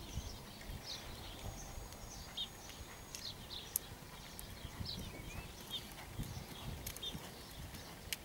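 Hoofbeats of a ridden horse on a sand arena surface, heard as dull low thuds, with small birds chirping in short calls throughout.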